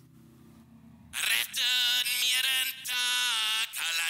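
A sung vocal played back through a heavy parallel processing chain: a filter cutting everything below about 6 kHz, a 1176 compressor in all-buttons mode squashing it hard, an envelope shaper softening the transients, and Steinberg Quadrafuzz set to tube distortion. It is faint for about the first second, then comes in with held, steady-pitched sung notes.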